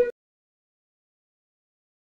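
Digital silence: the audio track is muted, after a sound cuts off abruptly right at the start.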